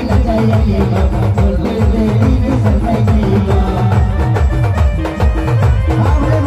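An Adivasi band playing a timli dance tune, amplified through a large loudspeaker stack. Big waist-slung drums beat a fast, steady, driving rhythm under an electronic keyboard melody.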